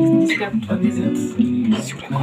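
Acoustic guitar strummed softly with held chords, under people talking.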